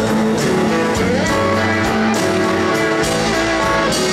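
Live blues-rock band playing an instrumental passage: an electric guitar lead over drums, bass and keyboard, with a note bent upward about a second in.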